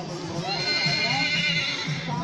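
Horse whinnying once, a high neigh that starts about half a second in and lasts about a second and a half.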